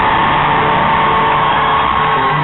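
Crowd cheering and screaming at the end of a song, over a guitar chord left ringing.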